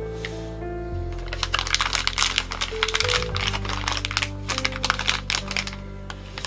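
Crinkling of a small plastic wrapper being handled and opened, a dense run of quick crackles through the middle, over background music.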